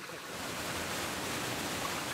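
Rushing water of a rocky mountain stream, a steady hiss that swells slightly at the start.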